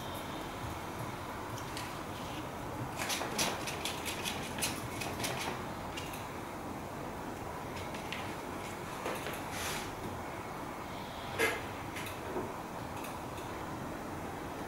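Palette knife scraping and tapping as acrylic paint is worked onto paper: a run of short, quick strokes a few seconds in, a few more later, and one sharper tap past the middle, over a steady background hiss.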